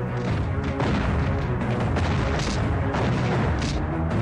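Dramatic action-film background score with a heavy bass, with several booming blast effects laid over it.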